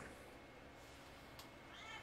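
Faint meow from a house cat near the end of otherwise near-silent room tone; she is meowing for attention.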